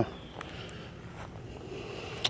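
Quiet outdoor background noise with a few faint clicks.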